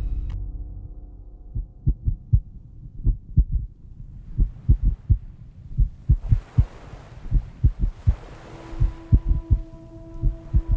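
A heartbeat sound effect: low, muffled double thumps repeating throughout. A soft rushing hiss joins about six seconds in, and a held low tone comes in near the end.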